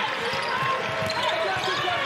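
Basketball game sound on a hardwood court: a ball being dribbled and sneakers squeaking in short chirps, over a steady arena crowd murmur.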